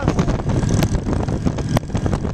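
Motorcycle engines running as the bikes ride along, with wind on the microphone. Two sharp clicks come through, about a second in and near the end.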